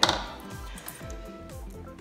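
Background music, with one sharp metallic clink right at the start as a pair of needle-nose pliers is set down on the table.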